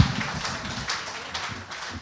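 Scattered audience hand claps, thinning out and fading.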